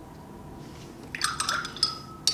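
Paintbrush rinsed and tapped against a glass water jar: a few light clinks with short ringing, starting about a second in, alongside a little water sound.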